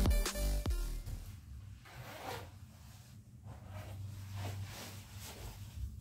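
An electronic music track ends about a second in. It is followed by faint, repeated rustling of clothing as a person takes off a zipped jacket.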